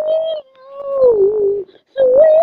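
A boy singing without accompaniment: a short held note, then a longer drawn-out note that wavers and slides down in pitch, with a brief pause before the next note begins at the very end.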